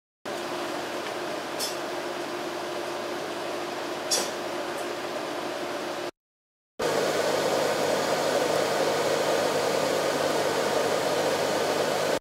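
Steady cabin noise inside a car, with the air-conditioning blower and engine hum running evenly. It comes in two stretches split by a brief cut to silence about six seconds in, and the second stretch is louder.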